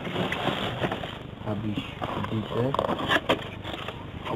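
Men talking in low voices, with rustling of handled curtain fabric at first and a few sharp clicks a little after three seconds in as a box is handled.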